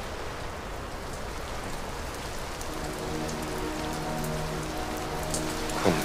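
Steady rain falling, an even hiss. A low, held musical chord fades in about halfway through.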